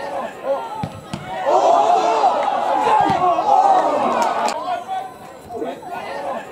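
Spectators and players shouting together as the ball is scrambled around the goalmouth. The shouting rises suddenly about a second and a half in and dies away after about five seconds, with a couple of dull thuds of the ball being kicked.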